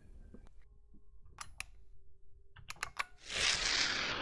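A few sharp computer clicks in two quick pairs, then, starting about three seconds in, a whoosh transition sound effect that falls in pitch and is the loudest sound here.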